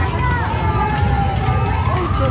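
A siren wailing, its pitch sliding slowly down and then climbing again near the end, over people's voices and a low rumble.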